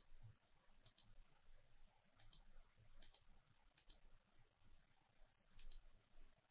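Faint computer mouse clicks, each a quick pair of ticks, coming roughly once a second.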